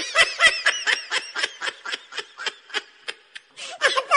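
A person laughing in rapid, high-pitched snickers, about five a second. The laughter thins out after about three seconds and picks up again just before the end.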